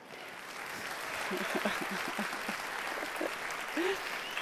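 Audience applause that builds over the first second and then carries on steadily, with faint voices under it.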